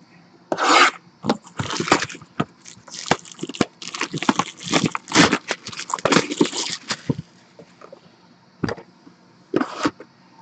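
Clear plastic shrink wrap being torn and crinkled off a sealed trading-card box, a run of crackling rustles for about seven seconds, then two short sharp sounds near the end.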